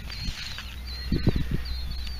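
A small bird chirping repeatedly in short high notes, over a steady low rumble. A few soft knocks and rustles about a second in, as a gloved hand handles a heavy rusty iron object in dry grass.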